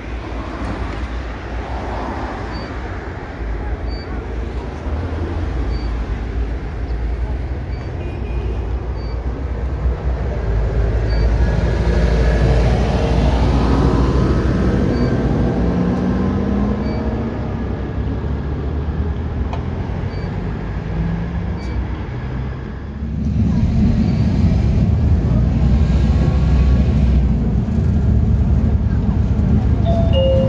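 Huanghai DD6181S03 articulated city bus running, with street traffic around it; partway through its engine pitch rises as the bus pulls away. After a sudden change about two-thirds of the way in, a steady engine and road rumble is heard from inside the moving bus.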